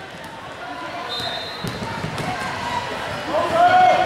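Indoor basketball game sounds in a gym hall: a ball dribbling on the hardwood floor, a brief high squeak about a second in, and spectators' voices calling out, with a loud shout near the end.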